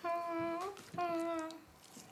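A woman humming two drawn-out notes with her mouth closed, the first rising at its end.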